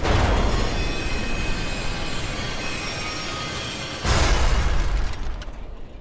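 Sci-fi sound effect of a heavy airlock door slamming shut: a sudden loud boom trailing into a long rumble that slowly fades, then a second boom about four seconds in that dies away near the end.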